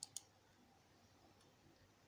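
Two quick computer mouse-button clicks about a fifth of a second apart, selecting a row in a program.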